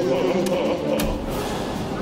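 A cartoon character's voice with a wavering pitch, then a sudden thump about a second in.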